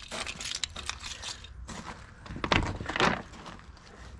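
Plastic tarp skirting rustling and crinkling as it is handled, in irregular bursts, with two louder crackles about two and a half and three seconds in.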